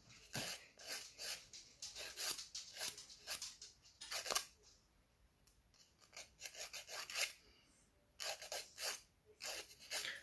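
Hand nail file rasping against the edge of a natural fingernail in short, quick strokes of about three a second, pausing for a second or two around the middle.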